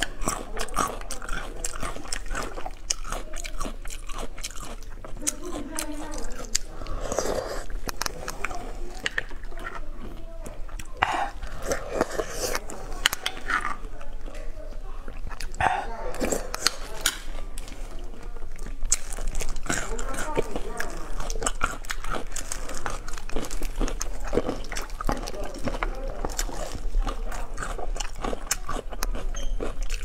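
Close-miked mouth sounds of a woman eating braised beef bone marrow: chewing and sucking the soft marrow, with many short sharp clicks and smacks throughout. A steady low hum runs underneath.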